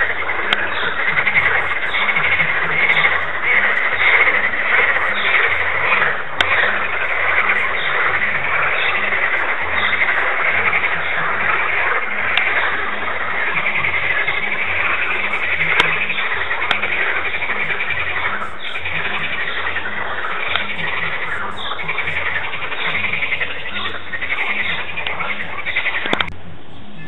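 A dense chorus of many frogs calling at once, their overlapping calls forming a loud, steady din that starts and stops abruptly.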